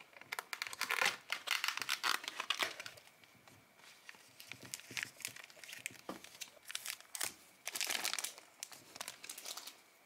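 Thin clear plastic packaging crinkling and crackling as it is handled and opened by hand, in spells with short pauses between them.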